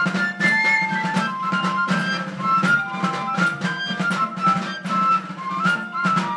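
Live Basque folk dance music: a diatonic button accordion (trikitixa) and drums play a lively tune, with held melody notes over a steady drum beat.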